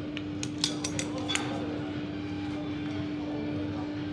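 Gym equipment clinking: a quick run of light metallic clicks in the first second and a half, then a steady hum of the gym with one constant low tone.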